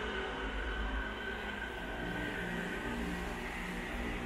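Steady low rumble and hiss of traffic inside a road tunnel, with a faint steady whine above it.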